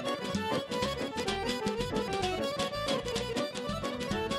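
A live band plays an instrumental tune in traditional Azerbaijani style on accordion, violin and Korg synthesizer keyboard, over a steady drum beat.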